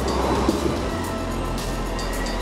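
Electric high-speed floor burnisher running steadily, its spinning pad working freshly applied burnishing cream into a new pad.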